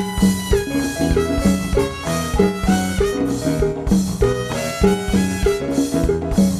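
Live salsa band playing an instrumental passage: horns holding chords over bass and percussion with a steady beat, no singing.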